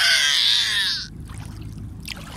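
A loud, high-pitched vocal cry that rises and then slides down in pitch, cutting off about a second in.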